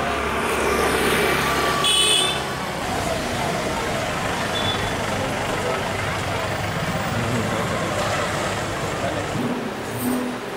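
Street traffic noise with voices in the background, and a short high horn beep about two seconds in.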